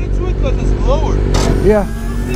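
Motorcycle engine idling steadily, a low even hum under men's voices.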